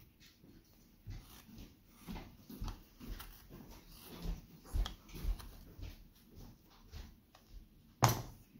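A carving knife, made from a bread knife, shaving curls from a small softwood blank: a series of short scraping cuts, about two a second, with soft knocks of wood and hands against the table.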